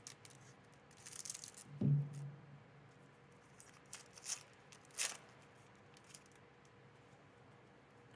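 A foil booster-pack wrapper is cut with scissors and torn open, with crinkling of the foil. There is a soft thump just before two seconds in, which is the loudest sound, and two short sharp crinkles a couple of seconds later.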